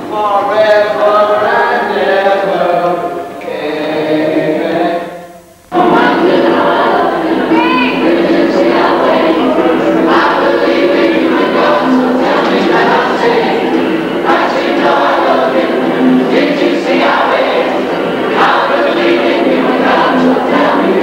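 A cast of teenage voices singing a chorus together in a rehearsal room. About five and a half seconds in, the sound cuts out briefly, then many voices carry on at the same level.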